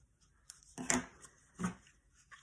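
Small craft scissors snipping off a scrap of black card stock. The snip is a short click. Two brief pitched sounds, like short hums or grunts, follow just under a second in and again near the end; these are louder than the snip.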